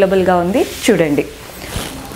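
A printed saree's fabric rustling and swishing as it is handled and flung over a shoulder to drape it. A woman's voice speaks over the start.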